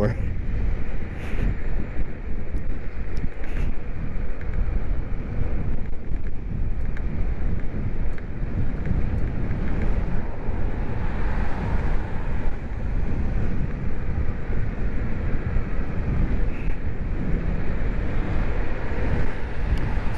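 Strong wind rushing and buffeting over the microphone of a camera on an electric bike moving at road speed. It makes a steady, rough rumble, with road noise under it.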